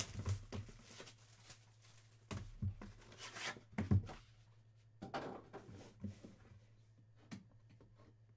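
Handling noise from a trading card hobby box being opened: scattered rustles and light knocks of cardboard on the table, with quiet stretches between.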